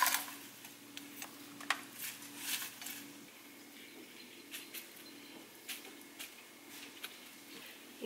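Quiet food-preparation sounds: scattered soft clicks and rustles of hands and a utensil handling arugula and avocado on a ceramic plate, over a faint steady low hum.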